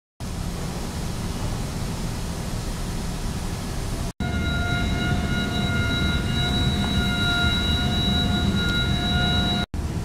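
Steady low machinery rumble and wind-like hiss of ships at a quay. After a cut about four seconds in, a steady high whine of several tones joins, and it stops with another cut near the end.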